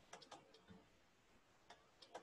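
Near silence with a few faint, irregular ticks of a stylus writing on a pen tablet or touchscreen.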